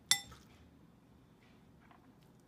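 A single sharp clink of a metal spoon against a dish, ringing briefly and fading, then a few faint soft scrapes.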